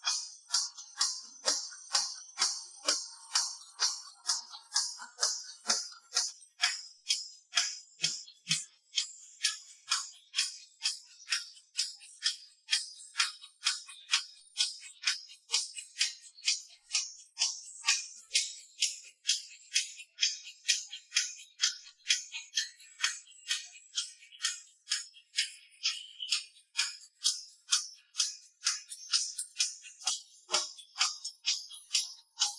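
Isolated pop drum track in a section without kick drum: bright, jingly hi-hat and tambourine-like hits in a steady beat, about two strong hits a second with lighter ones between. A couple of low hits come about eight seconds in.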